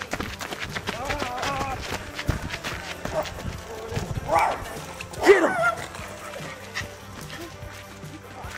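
A small dog barking at the costumed pair, with several sharp barks; the loudest come a little past the middle. Background music plays under it.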